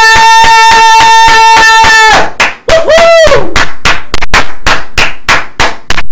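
Fast rhythmic hand clapping, about four claps a second, under a woman's loud long-held cry that breaks off about two seconds in. A short rising-and-falling cry follows about a second later as the clapping goes on.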